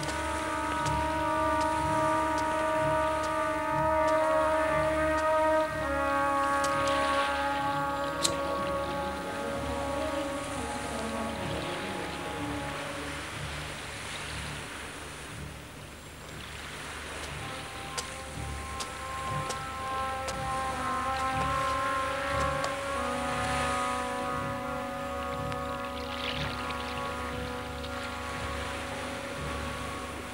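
Background music score of long, held synthesizer-like chords that shift slowly every several seconds, over a steady low rumble.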